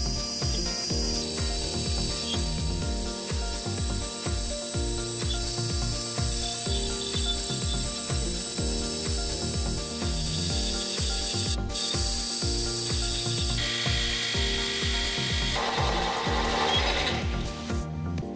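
Benchtop metal lathe running, its tool cutting grooves into a spinning brass flywheel and shaving off brass chips. A steady mechanical whir with a faint hiss of the cut, growing noisier near the end.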